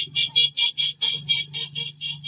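Plastic trigger spray bottle squeezed rapidly, about five short hissing spurts of water a second.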